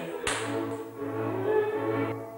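Transylvanian folk dance music played on strings, with one sharp slap of the dancer's hand about a quarter of a second in.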